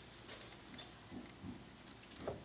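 Faint, soft patter and a few light ticks as shredded apple is tipped from a small ceramic bowl into a glass mixing bowl.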